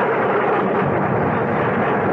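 Radio-drama sound effect of a jet airliner in flight through a storm: a steady rushing drone of engine and air noise with no break.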